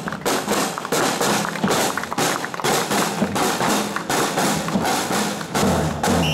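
A marching drum line of snare drums playing a steady run of rapid strokes.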